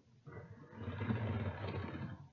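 Model train locomotive, a model of a Pennsylvania Railroad GG1 electric, running along the track with its motor and wheels rattling on the rails. It starts about a quarter second in and grows louder as it comes closer.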